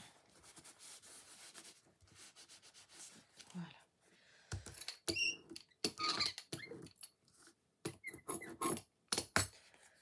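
A clear acrylic brayer rolled and pressed over a freshly glued paper card on a cutting mat, making rubbing sounds and a few short high squeaks, with light clicks and knocks as the tool is handled and set down.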